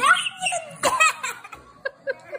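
A young child giggling in two bursts of laughter, each about half a second long, with short breathy laugh pulses near the end.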